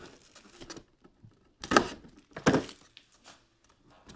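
A cardboard collectibles box being handled on a table: faint rustles, then two short, sharp scuffs a little under a second apart near the middle.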